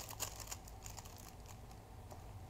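Faint light clicks and taps as a baby handles a soft fabric mirror book, mostly in the first half second, then a faint low room hum.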